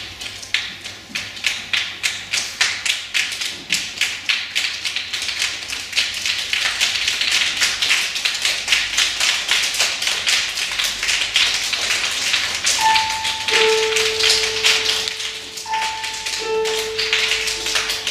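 A children's choir making body percussion with their hands: snaps and claps, sparse at first, thickening after a few seconds into a dense, rain-like patter. Clear held notes, two pitches an octave apart, come in and stop several times about two-thirds of the way through.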